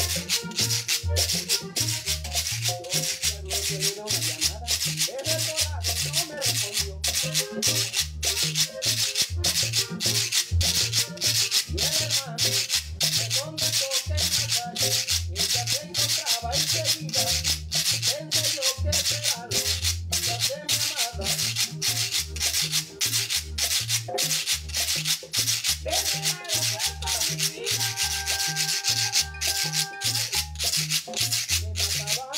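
Guacharaca, a ridged Colombian scraper, scraped in a quick, steady rhythm along with a recorded vallenato song. The song's pulsing bass and the held notes of its accordion run underneath the scraping.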